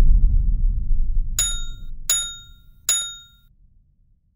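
Logo sting sound effect: a deep low rumble fading away, then three short bright metallic dings, each ringing briefly.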